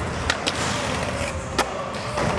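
Skateboard wheels rolling on concrete, with three sharp clacks of the board about a quarter second in, half a second in and just past a second and a half.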